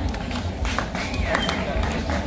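Outdoor open-air background picked up by a handheld microphone: a steady low rumble with hiss, a few faint clicks and faint distant voices.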